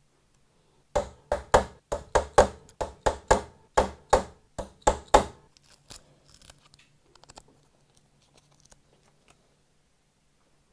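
A paper strip rubbed against a wooden guitar headstock: about a dozen quick scratchy strokes, roughly three a second, then faint crinkling and ticks as it is lifted.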